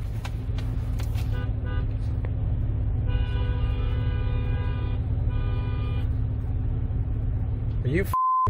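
Car horn honking: a couple of short toots about a second and a half in, then a long blast of about two seconds starting about three seconds in and a shorter one right after, over a steady low rumble of idling traffic heard from inside a car.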